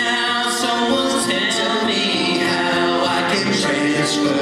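Male voices singing a pop song live, with soft acoustic guitar accompaniment.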